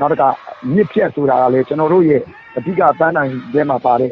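A person speaking in phrases with short pauses.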